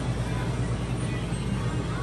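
Supermarket ambience: a steady low hum, with music playing underneath.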